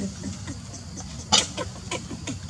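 A run of short animal calls, several a second, each dropping in pitch, with one sharp, much louder sound a little past the middle.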